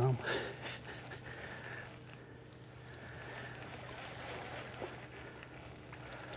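Quiet lake ambience on a fishing boat: small waves lapping against the hull under a faint, steady low hum.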